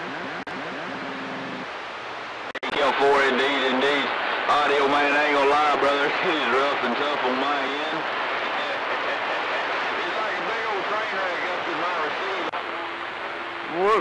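CB radio receiver audio: a steady hiss of static with garbled, hard-to-make-out voices from other stations coming through it, and a low steady tone in the first second or so.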